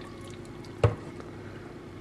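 Egg and milk mixture being poured from a glass bowl into a glass baking dish, a faint liquid trickle, with one sharp knock about a second in.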